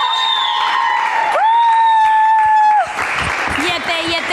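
A woman's voice holding two long high notes, the second ending about three seconds in, followed by applause from the studio audience.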